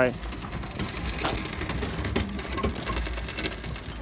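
Small motor of a steampunk tank-styled cart running with a low steady hum, with a few light clicks and rattles.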